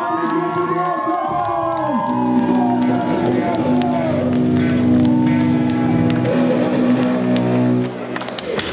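Metalcore band playing loud on stage during a soundcheck. A held chord rings on from about two seconds in, with drum and cymbal hits throughout, and a voice over the first couple of seconds.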